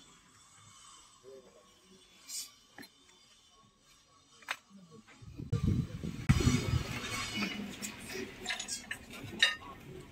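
Glazed ceramic plates and cups clinking lightly as they are handled and turned over on a stall table. A few faint clicks come first, then from about halfway louder rubbing and handling rumble.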